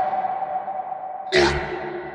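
Sparse break in a techno track: a held, echoing synth tone, with a noisy hit and a deep bass note about one and a half seconds in.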